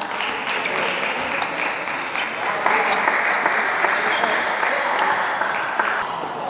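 Spectators applauding steadily in an indoor hall as a table tennis game is won, with voices mixed in.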